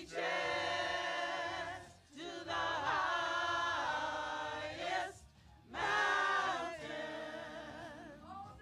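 Small church choir of mixed voices singing a hymn in three long, held phrases, with short breaks between them.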